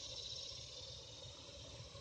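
Quiet outdoor background: a steady high-pitched hiss with a faint low rumble underneath and no distinct events.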